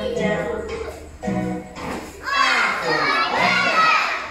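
A recorded children's English song playing, with a group of young children's voices over it, loudest in the second half.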